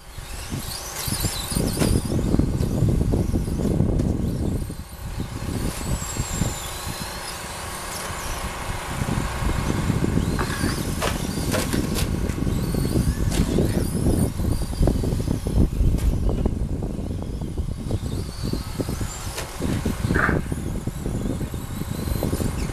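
Electric RC short-course trucks racing on a dirt track: motor whine and tyre noise rise and fall over a loud, uneven low rumble, with a few sharp knocks about halfway through.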